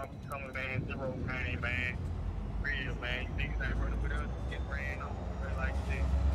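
Men's voices talking indistinctly in short phrases, over a steady deep rumble that grows stronger after the first second.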